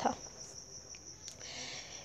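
Faint background hiss with a steady high-pitched tone held throughout, in a brief pause between spoken lines.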